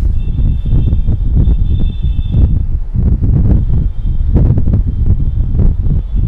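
A marker squeaking on a whiteboard as it writes: a thin, steady high squeal for about two seconds, which comes back fainter later. Under it, a heavy low rumble of air buffeting the microphone is the loudest sound.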